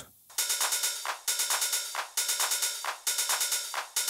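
Electronic drum loop from Bitwig Studio of open hi-hats and an 808 clap, starting about a third of a second in. The hits repeat in a steady rhythmic pattern, with the strongest hits coming about once a second and lighter hits in between. There is little low end and no kick drum.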